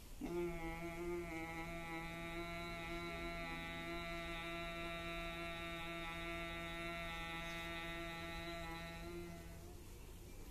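A man humming one long, steady low note on a single slow exhalation, as in bhramari (humming-bee breath) pranayama. It starts just after the opening and stops shortly before the end, lasting about nine and a half seconds.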